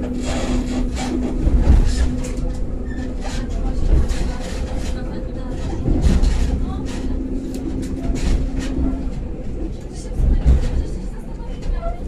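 EN57 electric multiple unit running on the line, heard from inside the carriage: a low rumble with irregular knocks of the wheels over rail joints, and a steady hum that drops out a few seconds in and returns for a while.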